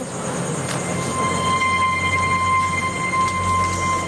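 A sustained dramatic drone in the soundtrack: a steady high held tone over a low rumble and hiss.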